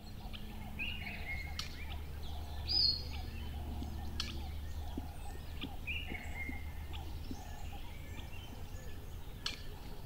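Outdoor background sound: a steady low hum with scattered short bird chirps.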